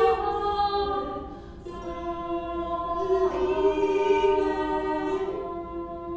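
A small ensemble of women's voices singing medieval music in harmony, holding long sustained notes. The voices shift to new notes about one and a half seconds in and again about three seconds in.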